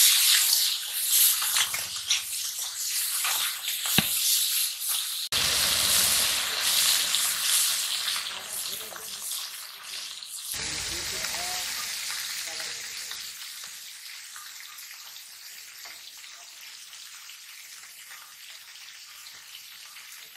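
Climbing perch frying in oil in an iron wok, a loud steady sizzle with small crackles. After about ten seconds it drops to a much quieter sizzle that slowly fades.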